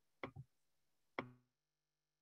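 Three faint, short clicks: two close together, then one more about a second later with a brief ring. Then near silence with a faint steady hum.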